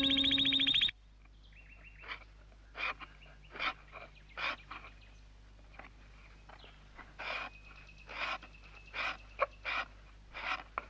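The theme tune ends on a held chord that cuts off about a second in. It is followed by a steady run of short rasping hand-tool strokes, roughly one a second, as work goes on at a wooden bench. Faint bird chirps sound behind them.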